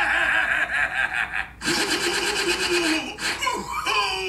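A man laughing loudly in two long stretches, split by a brief break about a second and a half in.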